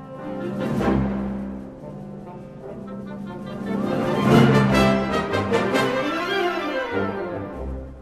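Wind orchestra playing, the full band swelling twice: once about a second in and then louder about four seconds in before dying away. Low drum strokes come near the start and near the end.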